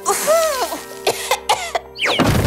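A cartoon character's woman's voice coughing a few times, as if choking on dust, over soft background music.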